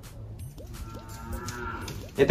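A cow mooing faintly: one drawn-out call beginning about a second in and lasting about a second.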